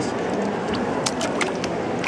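Hands stirring paper pulp in a vat of water, with a few small splashes and clicks in the second half, over steady background noise.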